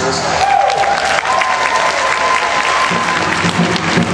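Audience applauding, with a single held high tone over the clapping for about two seconds. Music with a beat comes back in about three seconds in.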